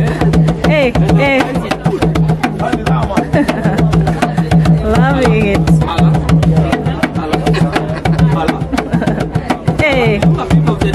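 Gourd-bodied hand drum with a hide head played with fast, steady hand strokes, a continuous rhythm. Sliding vocal calls rise and fall over it near the start and again about halfway through.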